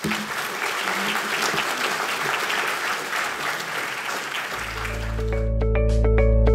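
Audience applauding, a dense steady clapping for about five seconds. Near the end, music comes in over it: a steady deep bass tone and then a run of plucked notes.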